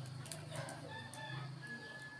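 A rooster crowing, faint, over a steady low hum.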